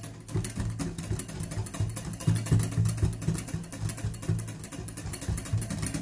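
Wire hand whisk beating dalgona coffee mixture in a glass bowl: a fast, steady run of clicks and scrapes as the wires strike and drag against the glass. The mixture is being whipped up into a thick, fluffy foam.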